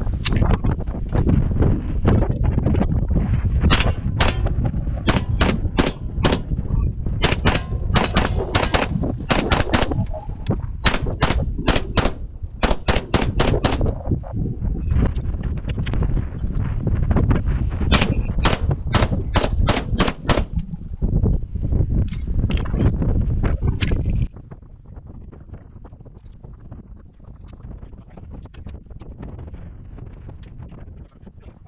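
Carbon-alloy DIY MAC 9mm upper firing strings of rapid shots. The shooting stops about twenty seconds in.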